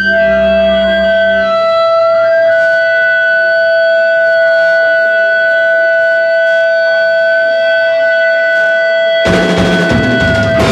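Live rock band: held, steady electric guitar tones ring on through a sparse passage, the bass dropping away about a second and a half in. Near the end the full band with drum kit comes back in.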